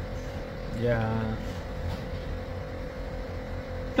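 A steady low background hum with a faint steady tone, under a pause in a man's talk. A single short murmured 'yeah' from him comes about a second in.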